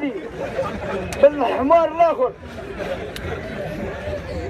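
Speech only: a man speaks for about a second in the first half, then low crowd chatter continues.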